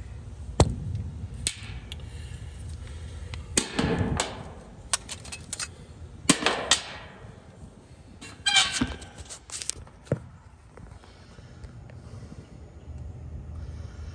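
Scattered sharp clicks and knocks of metal parts and tools being handled at an air-conditioner condenser's electrical panel as a run capacitor is taken out, over a low steady rumble.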